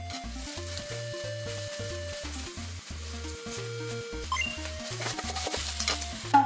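Strips of eggplant sizzling steadily as they shallow-fry in oil in a frying pan, turned with chopsticks, with a few light clicks near the end. Background music plays over it.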